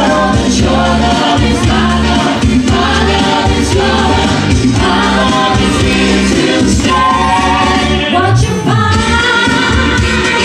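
Live pop vocal group of two male and two female singers singing together in harmony into microphones over instrumental backing, heard loud through the venue's PA.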